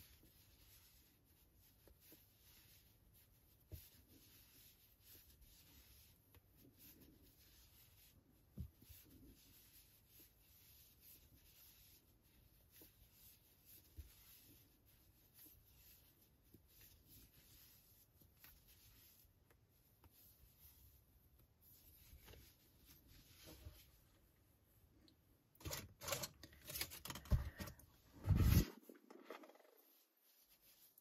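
Faint scratchy rubbing of yarn against a metal double-ended Tunisian crochet hook as stitches are worked in the round, with a few soft clicks. Near the end, a few seconds of much louder rubbing and rustling from handling the work.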